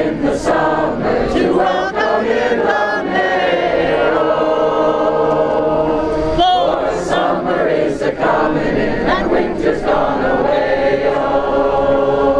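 A group of people singing together, many voices in unison with long held notes.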